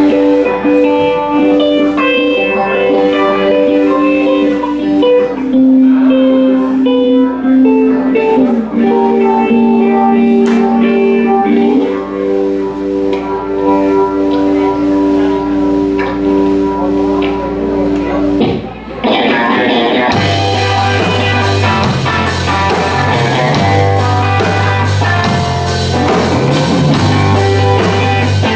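Live rock band with electric guitars holding long sustained notes, some bent slowly in pitch. About twenty seconds in, the full band comes in with bass guitar and drums.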